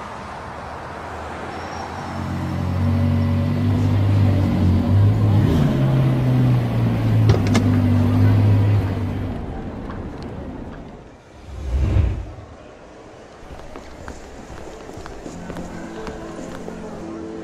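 Edited soundtrack music: low held bass notes that step in pitch, fading out, then a single deep boom about twelve seconds in, before quieter low notes return near the end.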